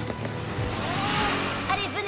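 Cartoon sound effect of a car speeding past: a rush of engine and road noise that swells, peaks just past the middle and fades, over background music. A voice begins near the end.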